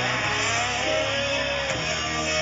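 Live heavy metal band playing loud through a festival PA, recorded from the crowd, with an electric guitar line whose notes bend and glide up and down in pitch.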